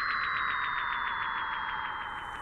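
Cartoon falling-whistle sound effect: one long whistle sliding steadily down in pitch, with a fast flutter, as figures drop through the air.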